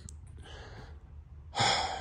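A man's short, sharp intake of breath about one and a half seconds in, after a quiet stretch.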